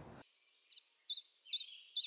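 A small songbird singing a run of short, high, down-slurred notes, about two or three a second, starting under a second in.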